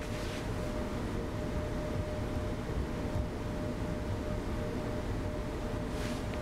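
Room tone: a steady low rumble and hiss with a faint steady hum, and no distinct events.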